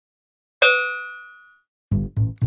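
A single bell-like metallic ding about half a second in, ringing out and fading over about a second. A music beat starts just before the end.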